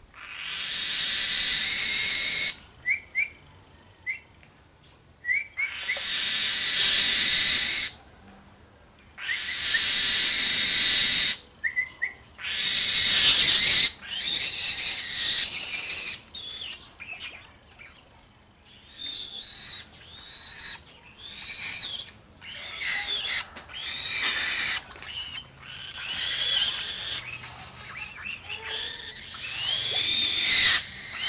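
A tame bird of prey calling again and again at feeding time: long hoarse screams of a second or two in the first half, then a fast run of short, rising and falling chirping calls.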